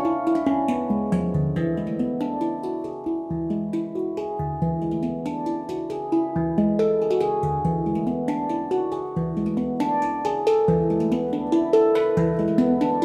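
Several Yishama Pantam handpans played by hand: quick overlapping ringing metallic notes, with a deep bass note struck every one to two seconds under the melody.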